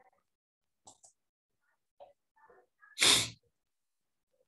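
A person sneezes once, sharply, about three seconds in, after a few faint small noises in near silence.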